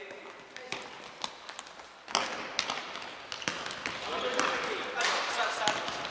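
A futsal ball being kicked and bouncing on a wooden sports-hall floor, a string of sharp knocks, mixed with players calling out; the play gets louder about two seconds in.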